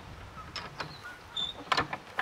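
Cast-iron canal lock paddle gear worked with a windlass: a few sharp metal clicks and clanks as the windlass goes onto the spindle, then a quick cluster of clicks near the end as the winding starts.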